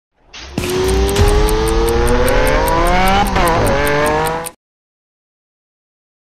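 A vehicle engine accelerating hard, its pitch rising steadily. The pitch dips briefly about three seconds in and climbs again, then the sound cuts off suddenly after about four and a half seconds. A fast, even ticking of about five ticks a second runs above it.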